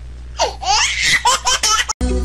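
High-pitched laughter in a quick run of short bursts, starting about half a second in and cut off abruptly near the end.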